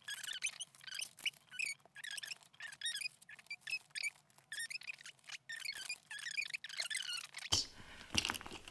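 Small items being handled and packed into a leather-lined Louis Vuitton Capucines BB handbag. The sound is a quiet, steady run of short clicks, taps and rustles from leather, plastic and metal pieces being pushed into place.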